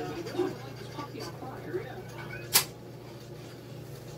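Faint, indistinct murmured voice over a steady low hum, with one sharp click a little past halfway through.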